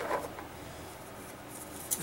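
Faint rubbing and handling noises from a gloved hand working around an opened brake fluid reservoir, over a low background hiss.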